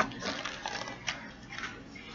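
Paper page of a picture book being turned, with a few soft rustles.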